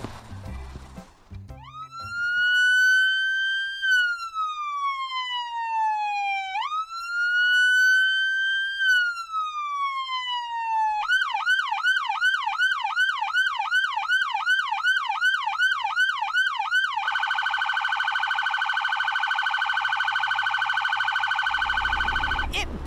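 Police car's electronic siren starting about a second and a half in: two slow wails that rise and fall, then a fast yelp of about two and a half sweeps a second, then a very rapid steady warble that cuts off near the end.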